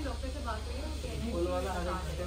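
Low, indistinct voices speaking in two short stretches, over a steady low hum and a faint hiss of background noise.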